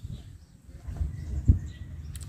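Low, uneven rumble of handling or wind noise on a handheld camera's microphone as it moves, with a single knock about one and a half seconds in.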